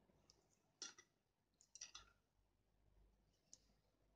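A few faint clicks and taps from a paintbrush being handled at the canvas over near silence: one about a second in, a small cluster around two seconds, and a last tiny click near the end.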